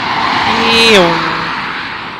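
A dark SUV passing close by on the road. Its tyre and engine noise swells to a peak about a second in, then the pitch drops as it goes past and the sound fades away.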